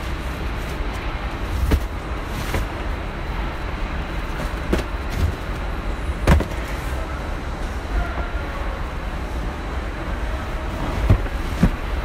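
Factory floor ambience: a steady low rumble of industrial machinery, with scattered sharp knocks, the loudest about six seconds in.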